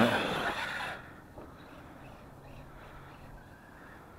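A man's voice trailing off in the first second, then quiet outdoor background with a faint steady low hum.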